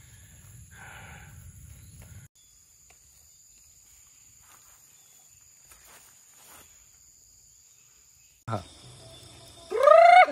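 Steady, high-pitched insect chirring, with a low wind rumble on the microphone for the first two seconds. Near the end the sound cuts to a different scene and a man speaks.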